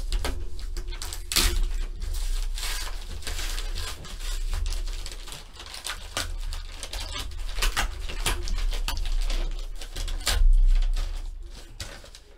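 Paper envelope rustling and crinkling in a steady run of small crackles as it is handled and torn open by hand.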